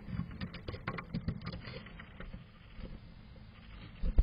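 Black-capped chickadee scrabbling inside a wooden nest box lined with wood shavings as it works at a large wood chip: a quick run of small scratches and taps, busiest in the first two seconds, then fainter.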